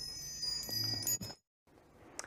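Chime sound effect, like wind chimes: several high ringing tones layered together, stopping suddenly about a second and a half in.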